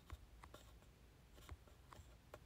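A few faint, scattered light taps, like a fingertip tapping a smartphone touchscreen, over near-silent room tone.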